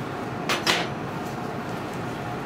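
Two quick clicks about half a second in, close together, over a steady background hiss.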